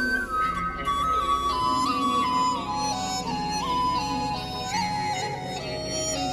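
Instrumental intro of a Mandopop theme song: a single lead melody line steps gradually lower over held accompaniment, with no singing.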